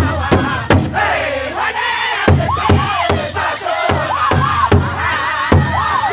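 Northern-style pow wow drum group singing in high, wavering voices around one large shared drum, several drummers striking it together about three beats a second. About a second in, the drumbeat drops out for a moment while the voices carry on, then returns.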